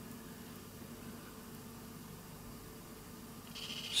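Pioneer CT-F950 cassette deck's tape transport running in play mode without a tape, a faint steady hum with no static ticks: grounding the spindle by finger stops the static discharge tick. A soft hiss swells near the end.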